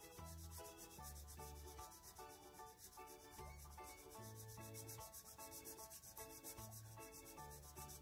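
Faint scratching of an orange felt-tip marker being rubbed back and forth on paper as it colors in a number, with quiet background music underneath.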